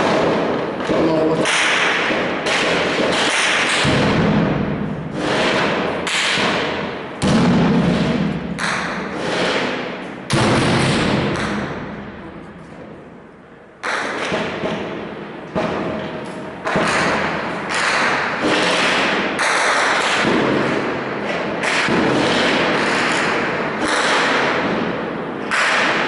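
Gunfire and blasts among buildings: loud sharp reports every second or two, each trailing off in echo, with one long fading rumble about ten seconds in.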